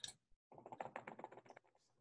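Faint typing on a computer keyboard: a single click, then a quick burst of keystrokes lasting about a second.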